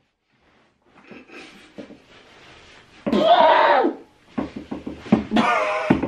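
A man's wordless vocal reactions to the sting of a leg wax strip being ripped off: a loud drawn-out cry about three seconds in, then more vocal sounds near the end.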